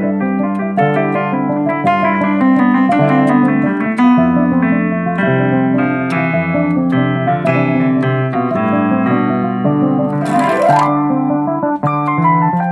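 Casio CTK-7200 keyboard playing an improvised jazzy piece in a piano-like voice, a run of quick notes over held low bass notes. A short hissing burst sounds about ten seconds in.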